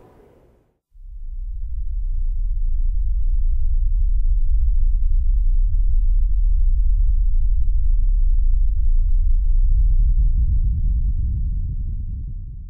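A deep, low rumble that fades in about a second in and then holds steady, with no melody or voice.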